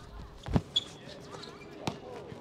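Two thuds of a basketball about a second and a half apart on an outdoor hard court, over faint court background.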